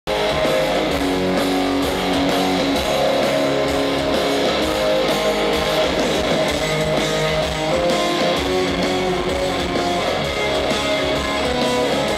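Live rock band playing loud through a PA: electric guitars over a steady drum beat, with no vocals.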